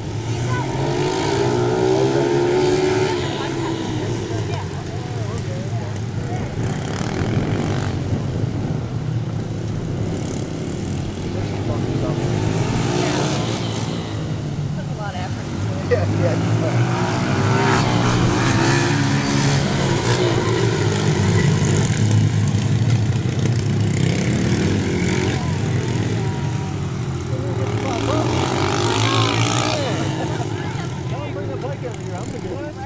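Several small dirt-bike engines racing around a dirt flat track, their pitch rising and falling again and again as the riders throttle through the corners.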